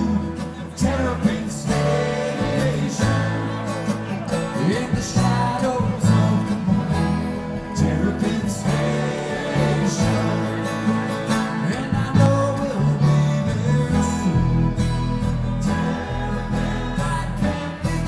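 Live bluegrass string band playing: banjo, acoustic guitar and upright bass together, with a steady line of bass notes under the plucked strings.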